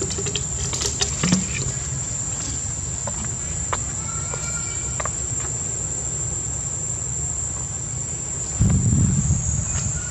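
Insects drone steadily at one high pitch throughout. A few faint clicks sound over it, and a short low rumble comes near the end.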